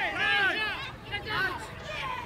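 High-pitched shouting voices over crowd chatter, in two bursts of calls: one at the start and another about a second in.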